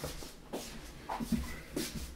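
Rustling and a few light, irregular knocks of someone moving about and handling equipment while adjusting the camera picture.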